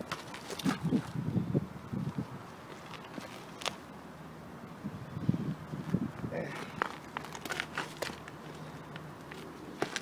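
Climbing rope rustling and scuffing as a magnet on the end of it is hauled in by hand, with boots shifting on concrete. A few sharp clicks come in the middle and later on.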